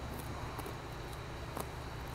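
Scissors snipping through the thick, matted bottom roots of a root-bound cat palm's root ball: a few faint separate cuts over a steady low background hum.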